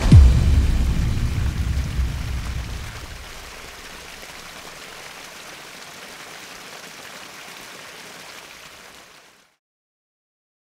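A deep boom that falls in pitch ends the music and fades out over about three seconds. After it comes a steady rushing noise of running water, which cuts off shortly before the end.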